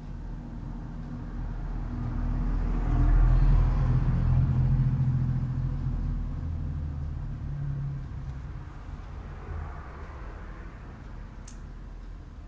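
A low rumble that swells for a few seconds around the middle and then fades away.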